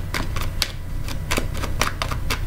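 A tarot deck being shuffled by hand: a string of irregular light clicks and slaps of card on card, over a low steady hum.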